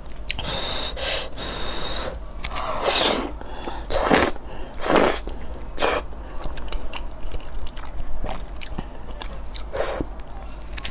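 Close-miked eating of noodles: a run of short, loud slurps as strands are drawn into the mouth, the strongest in the middle, with wet chewing between and after.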